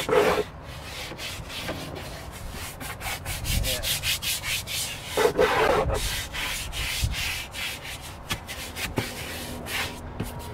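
Stiff brush scrubbing a wet, textured rubber golf cart floor coated with foaming cleaner, in quick repeated back-and-forth strokes.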